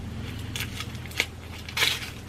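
A small package being opened by hand: light crinkling and crackling of packaging, a sharp click about a second in, then a louder rustling tear near the end.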